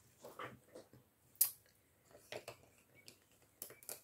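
Coloured pencils clicking and knocking against one another as they are handled and picked from a pile: scattered light clicks, the sharpest about a second and a half in, and a small flurry near the end.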